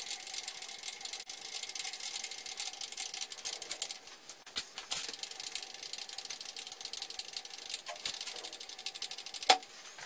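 A fast, steady mechanical clatter of rapid ticks over a faint steady hum, with one sharper click near the end.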